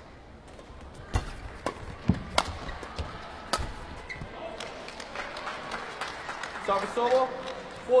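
Badminton rally: sharp racket strikes on the shuttlecock, about six in the first few seconds, then crowd voices and shouts building near the end as the rally finishes with a powerful backhand kill.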